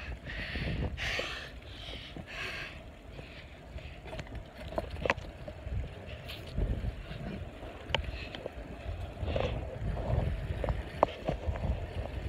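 Wind buffeting a hand-held phone's microphone during a bicycle ride, a gusty low rumble, with scattered small clicks and knocks from handling the phone and the moving bike.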